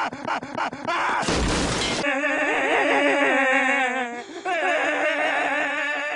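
A short crash, like something shattering, about a second and a half in, followed by long wavering pitched tones with a strong vibrato, like held singing or music.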